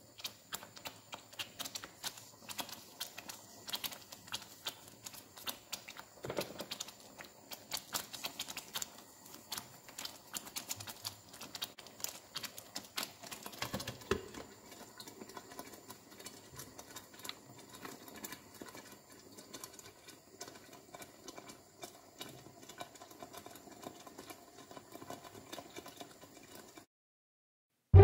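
Tomato passata simmering in a frying pan, thick bubbles popping with soft, irregular clicks and pops. About 14 seconds in, a glass lid is set on the pan with a knock, and the popping carries on under it.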